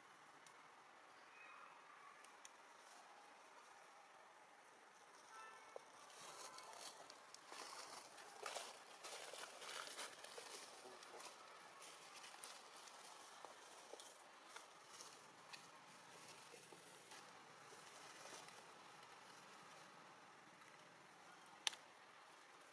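Near silence: a faint outdoor background with a run of soft rustles and clicks through the middle, and one sharp click near the end.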